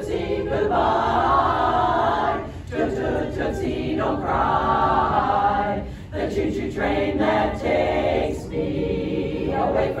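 Women's barbershop chorus singing a cappella in close harmony, holding sustained chords with short breaks between phrases.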